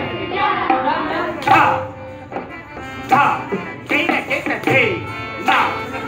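Kathak dance music in Shikhar taal: tabla playing with a voice over it, and a couple of sharp strikes a second or so apart early on.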